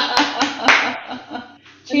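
Hands clapping in a short burst, with voices laughing and exclaiming over it, dying down after about a second.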